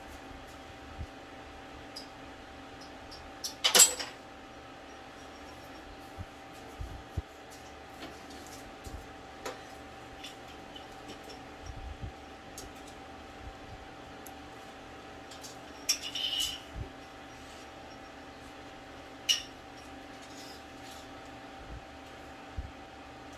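Hands peeling adhesive emblem letters off their plastic backing strip: small clicks and rustles, with a sharp crinkle about four seconds in and two more later on. A steady low hum runs underneath.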